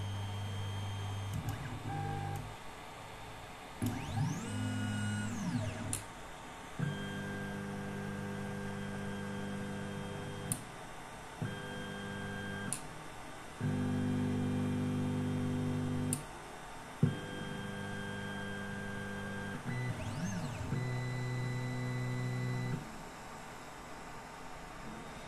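Longer 3D printer running an automatic BLTouch bed-leveling routine. Its stepper motors sound steady pitched tones in about five separate moves of one to four seconds, with one rising-and-falling glide early on. A few sharp clicks fall between the moves.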